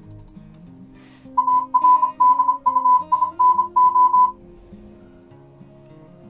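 Computer-generated Morse code (CW) beeps, a single steady tone keyed in dots and dashes spelling ARDUINO at about 32 words per minute, made with an online text-to-Morse converter to simulate CW reception. The beeping starts about a second and a half in and lasts about three seconds, over soft background music.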